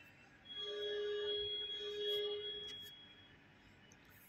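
Maruti Ertiga's rear parking-sensor warning buzzer sounding one steady beep tone for about two and a half seconds, starting about half a second in. This is the continuous tone that signals an obstacle very close behind the car.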